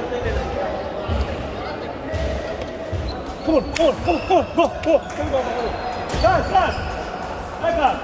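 Court shoes squeaking on a sports-hall floor in quick runs of short chirps, about halfway through and again near the end, with a couple of sharp knocks in between.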